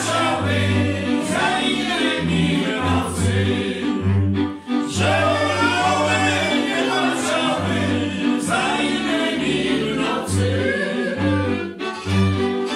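Góral highlander string band, fiddles and a bowed bass, playing a tune with several voices singing together over it. The singing breaks off briefly about four and a half seconds in, then picks up again.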